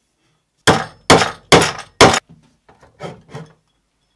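Homemade steel claw hammer driving a nail into a pine block: four sharp blows about half a second apart, each ringing briefly, followed by two quieter knocks.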